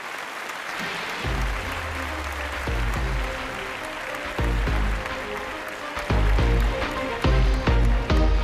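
Audience applauding in a large hall as a vocal performance ends, while music carries on underneath with deep bass notes starting about a second in.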